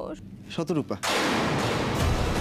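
A brief voice sound, then about a second in a sudden loud boom-and-whoosh impact sound effect, the dramatic sting of a TV serial, that runs on into the background music.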